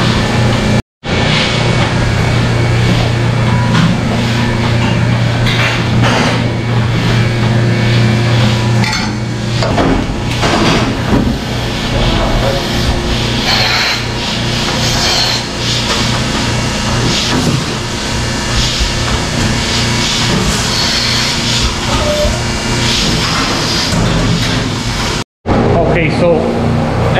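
Milking parlor running: a steady machine hum under repeated metallic clanks and clatter as milking units are handled and hung on cows.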